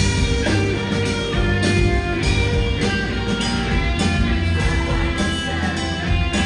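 Live rock band playing a guitar-led passage: electric guitars and bass over drums, with a loud hit right at the start and then a steady beat.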